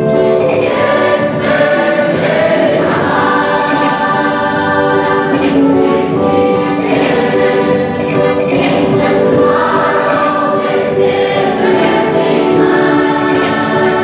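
A large group of young men and women singing together as a choir, many voices holding long notes in harmony and moving from chord to chord every second or two.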